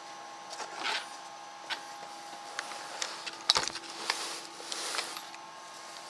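Clicks and knocks of a laptop and its barrel power plug being handled, one heavier knock about halfway through, over a faint steady electronic whine. A short whirring hiss follows a few seconds in as the laptop powers up on the battery supply.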